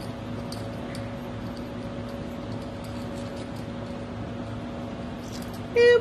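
A steady low hum, with a few faint light clicks of a metal jewelry chain being worked loose by hand.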